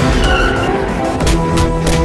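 Film score music, with a brief high squeal a quarter second in and a few sharp hits in the second half.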